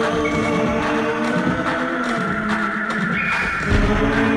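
Instrumental music with several sustained held notes and no singing. A low thump comes near the end.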